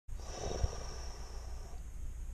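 A person's long breath out, like a sigh, lasting about a second and a half, with a short low thump near the start over a steady low rumble.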